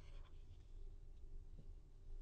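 Near silence: faint low room hum, with one faint small click about one and a half seconds in.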